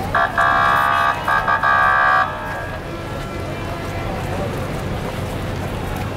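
A vehicle horn sounding in four blasts of one steady chord for about two seconds, over continuous street and crowd noise.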